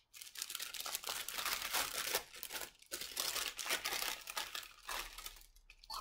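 A brown kraft-paper packet being handled, crinkled and torn open by hand: a run of rustling and tearing broken by a few short pauses.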